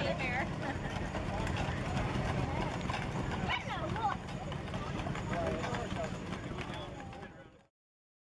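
Hooves of a four-abreast team of Clydesdale horses clip-clopping on a paved road, with people talking over it; the sound fades and cuts off near the end.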